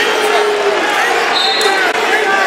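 Crowd and coaches shouting in a gymnasium during a wrestling bout, many voices overlapping at once, with a brief high squeak about one and a half seconds in.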